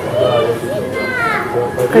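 People talking among a crowd of shoppers, with a child's voice; one voice rises high and falls away about a second in.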